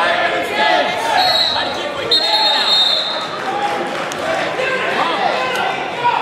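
Echoing gymnasium crowd noise: many overlapping voices talking and calling out during a wrestling bout. Two short, steady high tones sound about a second in and again about two seconds in.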